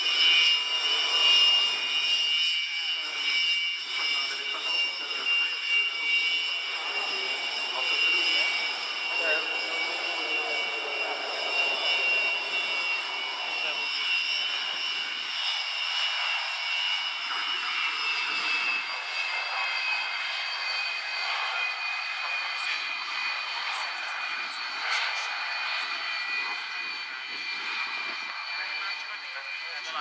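Twin Lyulka AL-31F turbofans of a Sukhoi Su-27UB at taxi power: a steady high-pitched whine made of several tones over a rushing hiss. About two thirds of the way through the whine drops a little in pitch and then holds.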